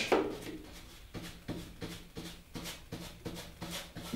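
Bristle brush scraping oil paint onto a stretched canvas in short vertical strokes, a run of soft quick brushing sounds about three a second.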